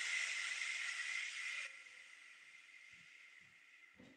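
A long, steady exhalation through pursed lips, heard as a breathy hiss: the release of a held deep breath in a guided breathing exercise. It stops a little under two seconds in.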